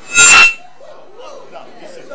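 Sudden loud, distorted burst from the hall's PA system, with a shrill ringing tone in it, lasting about half a second near the start. It is a glitch of the sound system that startles the room, followed by low room hum.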